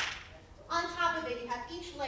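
A single sharp snap or click right at the start, the loudest sound here, followed after a short pause by a woman speaking.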